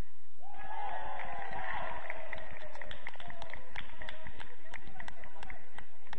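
Several footballers shouting and calling to each other at once across the pitch, with a quick run of sharp taps, about three or four a second, under the voices from about two seconds in.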